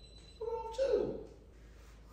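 A baby's brief fussing cry: two short cries about half a second in, the second falling in pitch.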